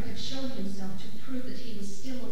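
Mixed chamber choir singing: several voice parts holding notes together, with crisp 's' consonants cutting through.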